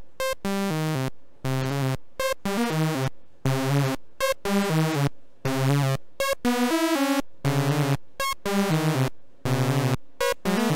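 Two SSI2131-based Eurorack VCOs sounding together as sawtooth waves, playing a sequenced line of short notes that step up and down in pitch with brief gaps between them. The tone is a fat, bright saw sound, and some of the notes waver.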